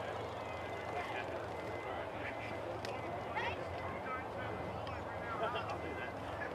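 Distant, scattered shouts and calls from players and spectators across an open football field, over a steady low hum.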